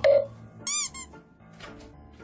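Background music with a brief loud vocal sound at the start, then, about two-thirds of a second in, a quick run of four high squeaky chirps, each rising and falling in pitch, and one shorter squeak just after.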